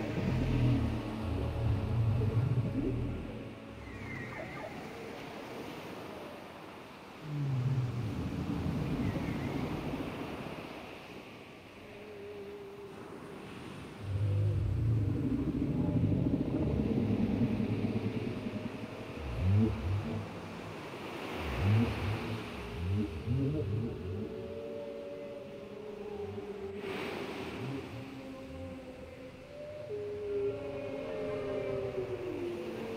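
Whale calls: low moans that swell and fade in waves every few seconds, with a cluster of short, swooping cries about twenty seconds in.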